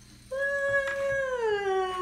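A child's voice giving one long high call. It starts about a third of a second in, holds steady, then slides gradually down in pitch.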